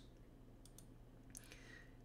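Near silence with a steady faint hum, broken by two pairs of faint clicks from a computer mouse.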